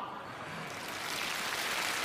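Studio audience applauding after a punchline, the clapping swelling steadily louder.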